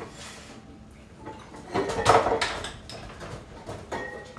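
A brief burst of rustling and clattering about two seconds in, as of household things being handled, most likely the seasoning being fetched.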